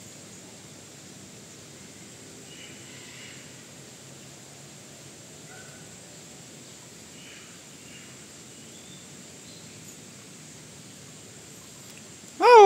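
Steady background hiss with a few faint, short, high chirps from small birds, scattered a second or two apart.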